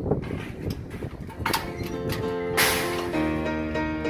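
Steel mesh trailer ramp gate being let down, rattling and then clanking loudly onto the pavement about two and a half seconds in. Piano background music comes in about two seconds in.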